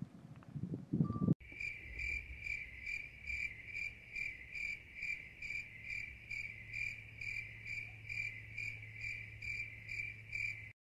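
A high-pitched chirp repeating very evenly, about two a second, over a faint steady hum; it starts abruptly about a second and a half in, after a brief low rumble.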